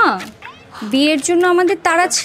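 A woman's raised, high-pitched voice speaking in drawn-out phrases, with one long held vowel in the middle.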